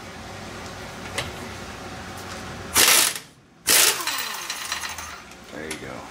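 Pneumatic impact wrench loosening a wheel's lug nut: two short loud bursts about a second apart, the second trailing off in a falling whine as the tool spins down.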